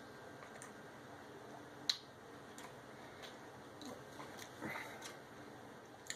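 Faint chewing of a kettle-cooked lattice-cut potato chip topped with a Swedish Fish gummy candy: a scatter of small crunches, the sharpest about two seconds in.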